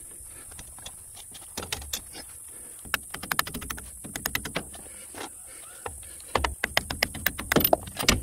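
Hand tools working the nut and bolts on a steam locomotive's Stephenson valve gear link: runs of quick metal-on-metal clicks and clinks, thickest in the middle and again near the end.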